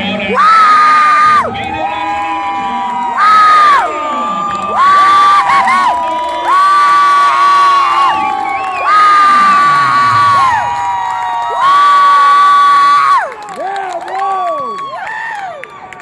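Fight crowd cheering, with loud drawn-out high-pitched screams close by: about six in a row, each a second or so long, then shorter shouts near the end.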